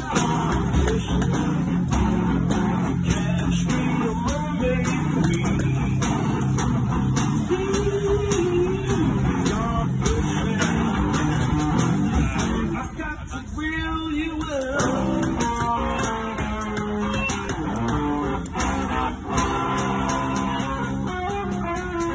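Electric guitar played live in a bluesy instrumental passage, with a bent note rising about eight seconds in and a brief drop in the playing a little past halfway.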